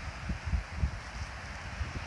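Wind buffeting a microphone: a low rumble with a few soft thumps, over a faint hiss.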